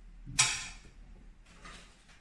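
A sudden sharp knock or clatter about half a second in, dying away over half a second, then a fainter brief rustle near the end.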